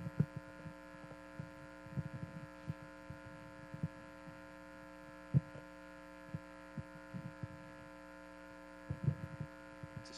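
Steady electrical hum from the church sound system, with scattered soft low thuds and knocks of footsteps and microphone handling as a microphone is passed between speakers.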